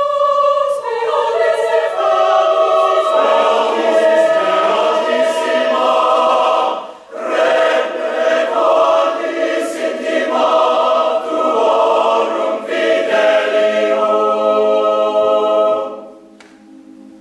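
Mixed choir of men and women singing unaccompanied in full, sustained chords, with a brief cutoff about seven seconds in before the next phrase; the phrase ends right at the close.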